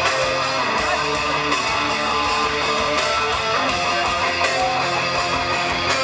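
A three-piece rock band playing live through a festival PA: an electric guitar riff over bass and drums, recorded from the crowd.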